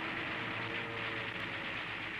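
Steady hissing noise with faint held musical tones and no distinct blasts or impacts.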